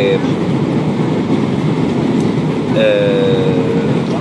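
Loud, steady rush of airliner cabin noise in flight, the engines and airflow heard from a window seat.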